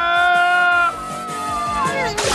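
Cartoon poodles screaming as they are flung through the air: one long, steady-pitched cry that breaks off about a second in, followed by a thinner tone sliding downward.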